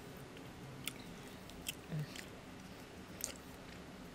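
A person eating ice cream off a spoon: a few faint, sharp clicks and smacks of spoon and mouth spread through, with a short hummed "mm" about two seconds in.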